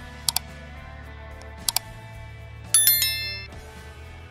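Animated subscribe-button sound effects over quiet background music: two mouse-click sounds, each a quick double click, about a second and a half apart, then a bright bell chime that rings out and fades within a second.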